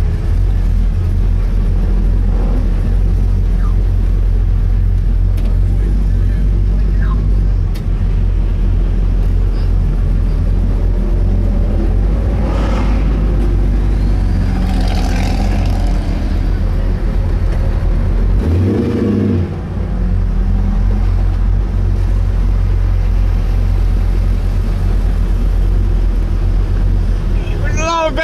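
Pro Street Chevy Nova's engine rumbling low and steady as the car cruises at low speed, heard from inside the car. The note dips briefly and changes about two-thirds of the way through.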